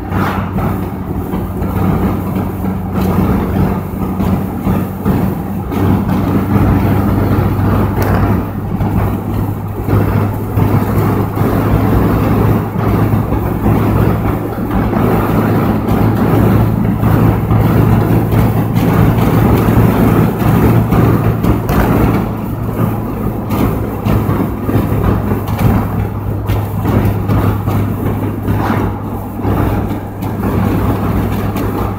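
Car engine and tyre noise heard from inside the cabin while driving, a steady low hum over road rumble that holds level throughout.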